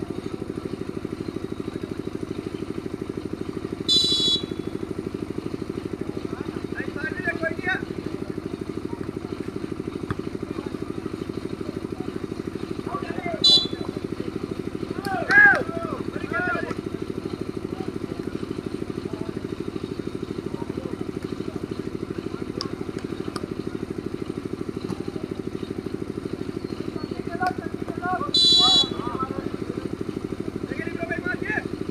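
Volleyball referee's whistle blown three times: short blasts about four and thirteen seconds in and a longer one near the end. These are the signals that start and stop play. Players' shouts come around the middle, over a steady low hum.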